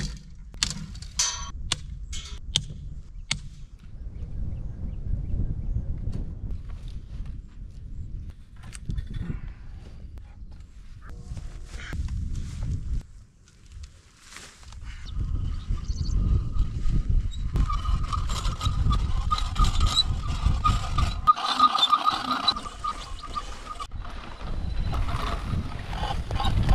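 Wind rumbling on the microphone during outdoor fence work, with a few sharp knocks in the first few seconds. From about two-thirds of the way through, a steady whir with a fast rattle, from a hand reel of electric polywire being unwound along a barbed-wire fence.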